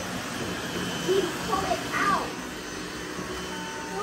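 Several robot vacuum cleaners running together on a mattress: a steady motor hum and whir, with two brief gliding vocal sounds over it.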